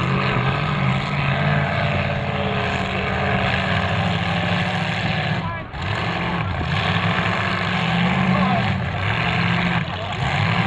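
Several demolition derby cars' engines running and revving hard at once, the engine notes rising and falling, with a brief drop about five and a half seconds in.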